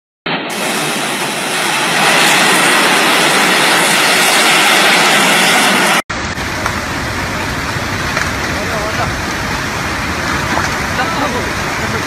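Steady rushing noise of a landslide sliding down a hillside. It cuts off abruptly about six seconds in and gives way to a lower, fuller rush of a mudslide flowing down through trees and houses.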